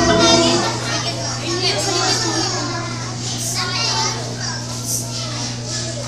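Music stops about half a second in, leaving many young children chattering and calling out in a large hall, with a steady low hum underneath.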